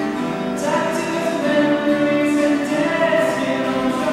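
Slow music with singing: long held sung notes that move from one pitch to the next about once a second.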